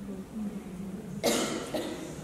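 A person coughing: one sharp cough a little past the middle, then a smaller one after it.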